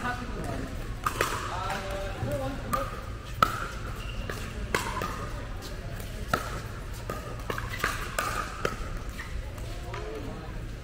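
Pickleball paddles hitting a hollow plastic ball, a dozen or so sharp, irregular pops through a rally, with the ball bouncing on the court. Each pop rings briefly in the large indoor hall, over voices in the background.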